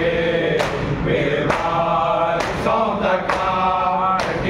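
Group of men chanting a noha, a Shia lament, in unison, with sharp chest-beating (matam) strikes roughly once a second.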